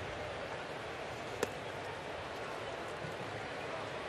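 Steady murmur of a ballpark crowd, with a single sharp pop about a second and a half in as a 93 mph sinker lands in the catcher's mitt for a ball.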